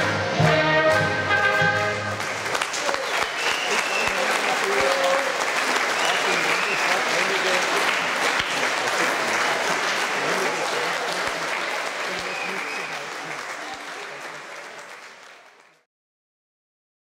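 A brass band plays the last chords of a folk dance tune, ending about two seconds in. The audience then applauds, with voices among the clapping, and the applause fades out near the end.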